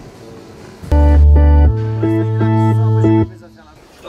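An amplified instrument playing through the stage sound system during a band soundcheck: a loud, deep held note with short notes repeated over it. It starts about a second in and stops abruptly a couple of seconds later.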